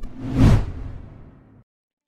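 A whoosh sound effect closing an animated logo intro: it swells to a peak about half a second in and then fades out over about a second.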